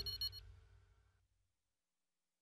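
Tail of a short electronic chime sting: a few steady tones that die away about a second in, then silence.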